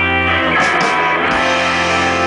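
Live rock band playing without vocals: electric guitars holding sustained chords over bass and drums. The low held notes drop out about half a second in and come back about a second later.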